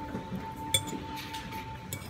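Metal fork and spoon clinking against a ceramic plate while spaghetti is twirled: one sharp clink about three-quarters of a second in, and a lighter one near the end.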